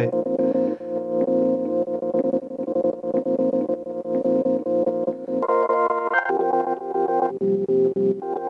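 A Rhodes electric piano sample caught as a micro-loop in a Chase Bliss MOOD granular looper pedal and warped as its clock knob is turned: a sustained, repeating chord texture. About five and a half seconds in the pitch jumps up and the low notes drop out, then it shifts again twice.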